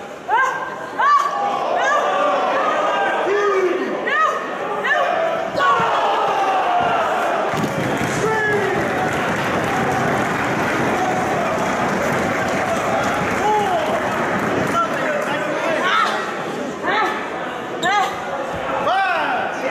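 Shouts and yells from the wrestlers and crowd in a hall, with several sharp thuds and slaps from wrestlers brawling at ringside in the first few seconds. About seven seconds in, a steady wall of crowd noise builds and holds for several seconds before the separate shouts return near the end.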